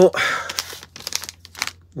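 Packaging crinkling as it is handled for just under a second, followed by a few light clicks.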